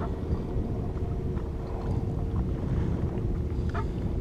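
Small boat under way: a steady low rumble of wind and water with a faint, even motor hum.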